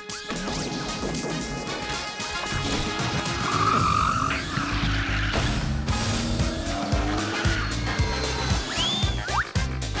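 Upbeat music with a steady bass beat, mixed with cartoon sound effects: a toy car's engine and tyre skid, a crash, and sliding whistles near the end.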